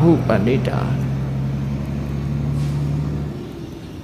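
A steady low mechanical hum that stops suddenly a little over three seconds in.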